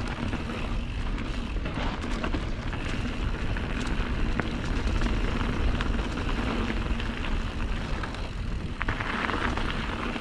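Mountain bike riding over a dirt trail, with wind rumbling on the microphone and scattered short ticks and rattles from the bike and tyres.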